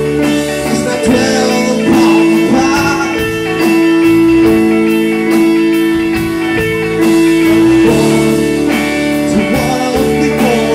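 Live rock band playing: electric bass and electric guitar over a drum kit, with a cymbal ticking steadily several times a second.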